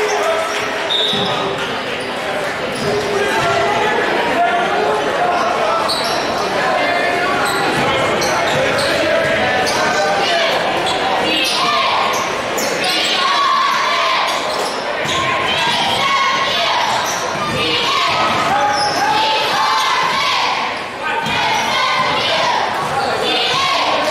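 A basketball dribbled on a hardwood gym floor during play, with sharp bounces over steady crowd chatter echoing in a large gymnasium.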